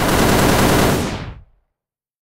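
A rapid burst of automatic gunfire, a sound effect: a fast rattle of shots that starts abruptly, then fades out and stops about a second and a half in.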